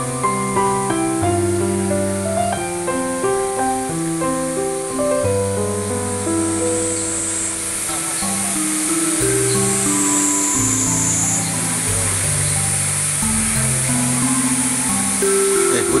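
Background instrumental music: a slow melody of held notes moving in steps.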